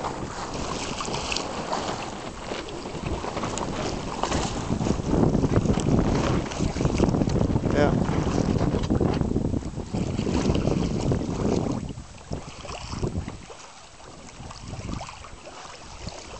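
Wind buffeting the microphone over water rushing and sloshing along a boat's hull. The rushing is loudest in the middle and eases about twelve seconds in.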